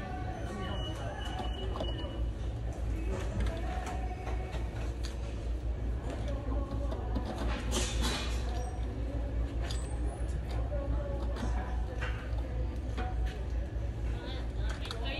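Indistinct conversation between two men over a steady low hum of store ambience, with one brief sharp noise about eight seconds in.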